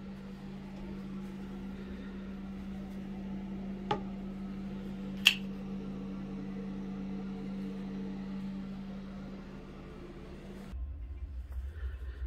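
Steady motor hum of a small-room exhaust fan, with two sharp clicks about four and five seconds in. The second, loudest click is a metallic snap from a folding knife's blade. The hum cuts off suddenly near the end and a low rumble takes over.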